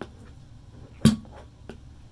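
A slime-filled rubber balloon being pulled off the neck of a plastic bottle, snapping free with one sharp smack about a second in, plus a few faint clicks of handling.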